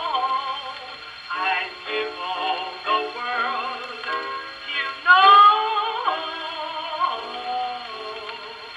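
A 1926 Columbia 78 rpm blues record playing on an acoustic Victor Victrola phonograph: a woman's sung melody, thin and boxy with no deep bass. The loudest note rises about five seconds in.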